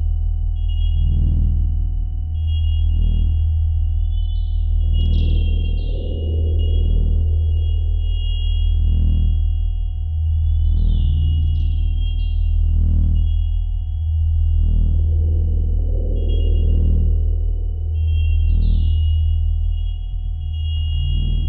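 Electronic sci-fi score: a deep steady drone with a dull pulse about every two seconds, under high steady beeping tones that break into quick upward chirps about every six seconds.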